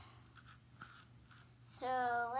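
Faint clicks and rustles of a small plastic toy being handled in the fingers, over a low steady hum. A girl's voice starts near the end.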